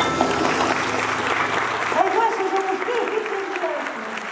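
Theatre audience applauding at the close of a song. From about halfway through, a voice speaks over the clapping.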